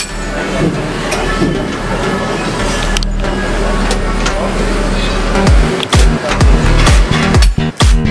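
Background electronic dance music. A heavy, steady kick-drum beat comes in about five and a half seconds in, over a dense, noisy mix before it.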